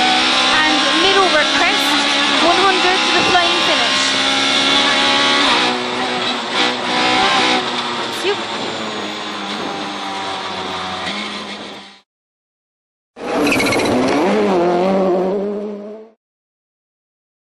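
Ford Fiesta rally car engine heard from inside the cabin, running hard at first. About six seconds in the engine note drops as the car lifts off and slows at the end of the stage. It cuts off suddenly, then comes back loud for a few seconds near the end.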